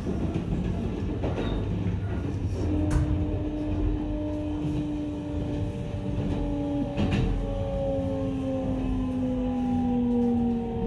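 Kintetsu 22000 series ACE's Mitsubishi IGBT-VVVF inverter during braking: from about three seconds in, a set of whining tones that slowly fall in pitch as the train slows, over the rumble of the running gear. A couple of sharp clicks come from the wheels on the rails.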